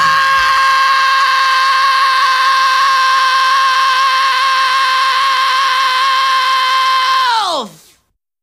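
A single held note, most likely electric guitar, rings steadily for about seven seconds at the close of a thrash metal song. It then dives steeply down in pitch and cuts off into silence.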